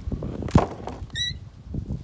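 Wind buffeting a phone's microphone with rumbling and knocks, and a sharp knock about half a second in as the phone is blown over onto the sand. A brief high squeak follows about a second in.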